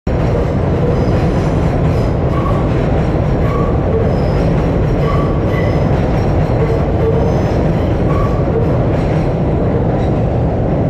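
Subway train running on the steel elevated structure overhead: a loud, steady rumble with short high wheel squeals now and then.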